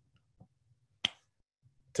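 A single sharp click about a second in, during an otherwise quiet pause, with a few much fainter small ticks around it.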